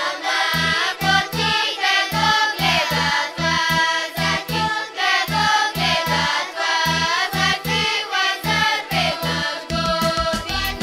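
Girls' children's choir singing a Bulgarian folk song together, over a steady low beat of about three pulses a second.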